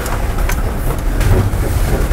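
Mercedes Sprinter 4x4 van's diesel engine running at low speed as the van crawls through a muddy puddle, a steady low rumble with tyre and water noise. There is one sharp click about half a second in.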